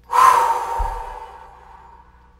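A woman's long, breathy exhale, a sigh: loud at the start, then trailing off over about a second and a half.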